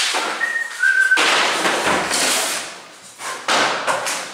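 A wooden chair is grabbed and dragged across a hard floor, with hurried footsteps and scraping, and a dull thud about two seconds in. Near the start come two brief high whistle-like tones, the second a little lower than the first.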